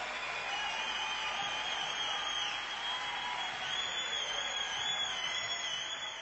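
Concert audience applauding and cheering, with a few wavering whistles over the steady clapping.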